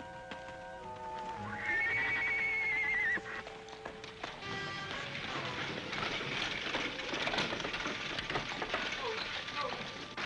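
Orchestral film score with held notes, and a high wavering horse whinny about two seconds in. From about halfway on, the music gives way to horses' hooves clattering and a horse-drawn buckboard rolling along a dirt street, with voices of people in the street.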